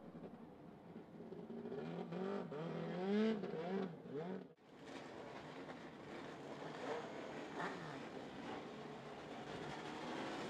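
Four-cylinder dirt-track race car engine revving in rising and falling swells at low speed. A sudden break a little before the middle gives way to a quieter, steadier sound of race cars running slowly.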